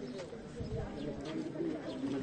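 A bird calling over faint, indistinct voices of people, with a soft low thump about half a second in.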